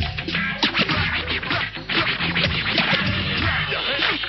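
Old-school hip hop track in an instrumental break: a DJ scratching a record on a turntable, quick back-and-forth sweeps over a repeating beat and bass line.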